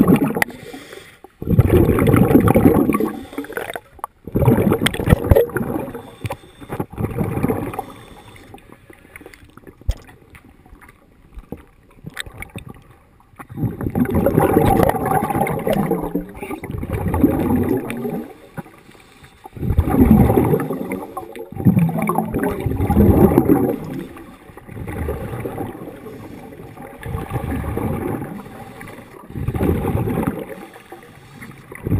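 Scuba regulator exhaust heard underwater: bursts of gurgling bubbles, one with each exhaled breath, coming every few seconds with quieter gaps in between.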